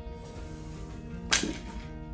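A single sharp knock a little past halfway through, as a ceramic figurine is set down on a metal store shelf, over steady background music.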